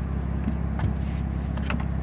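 A car engine idling steadily, with a few faint clicks and knocks as the folded fabric-and-metal wind deflector is slid into its slot behind the rear seats.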